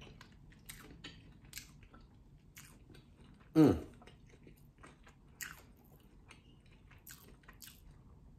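A man chewing sauced boneless chicken wings close to the microphone: quiet, irregular wet mouth clicks and smacks, with one short 'mmm' of enjoyment about three and a half seconds in.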